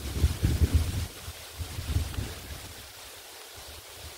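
Wind buffeting the microphone in low, rumbling gusts for about the first two seconds, then easing off to a faint hiss.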